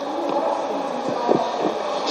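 Steady hall room noise with faint, indistinct voices murmuring off-microphone.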